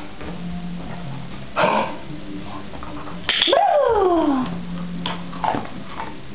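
A curly-coated dog gives one drawn-out vocal call about halfway through, sharp at the start, rising then falling in pitch over about a second. A few short sharp sounds come before and after it.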